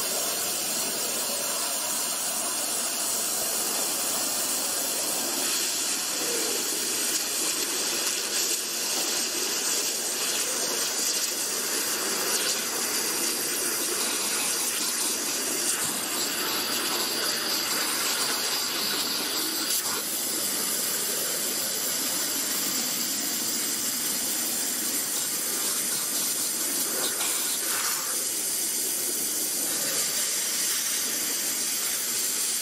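Water jet cutter's high-pressure jet hissing steadily as it cuts through a brass padlock.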